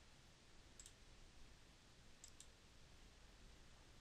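Near silence with faint computer mouse clicks: one just under a second in, then a quick pair a little past the middle.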